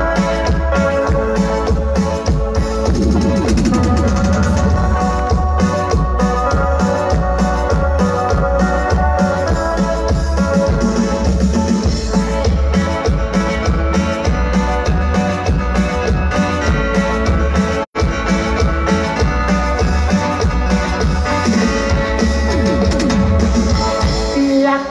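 Live grupera band playing an instrumental stretch, electronic keyboards leading over drums and bass with a steady beat. The sound drops out for an instant about three quarters of the way through.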